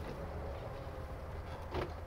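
Quiet, steady low rumble of outdoor background noise, with no distinct clicks, knocks or other events.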